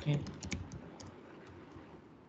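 Computer keyboard typing: a quick run of faint keystrokes in the first second, then a few single taps.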